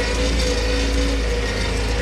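Tractor engine running at a steady speed, a constant low hum with a steady drone above it.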